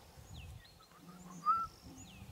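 Small birds chirping in the background, with one short, louder high call about one and a half seconds in, over a low rumble.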